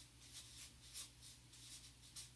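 Marker pen writing on a chart pad of grid paper: faint, short scratchy strokes as letters are drawn, over a steady low hum.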